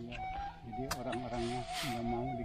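Quiet voices talking in the background, with a thin, wavering held note of music over the first half and a short click about a second in.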